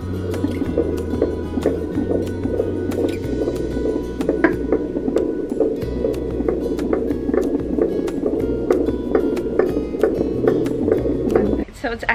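A handheld fetal Doppler probe on a pregnant belly picking up the baby's heartbeat as a fast, fluttering whoosh, over background music with low held notes that change every few seconds. Both stop suddenly near the end.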